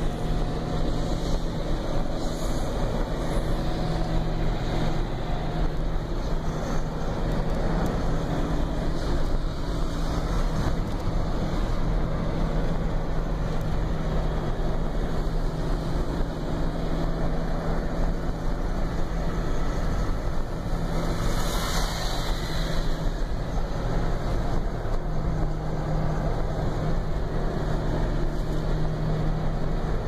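Steady engine and road noise heard from inside the cabin of a moving car, with a brief louder rush of noise about 22 seconds in.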